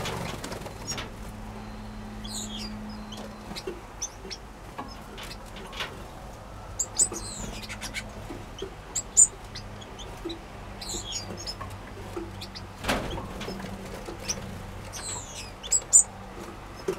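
Small aviary finches chirping with short, scattered high calls and quick sweeping notes, with brief wing flutters and sharp clicks from birds landing on perches and nest boxes. A faint steady low hum sits beneath.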